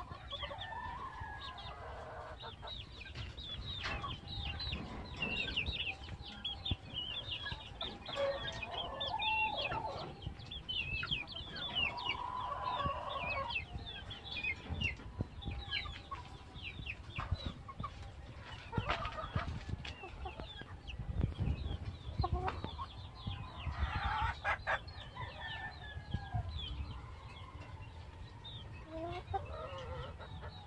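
Caged domestic chickens clucking and calling, with many short high-pitched calls running throughout and louder calls every few seconds. A few knocks and low rumble come through in between.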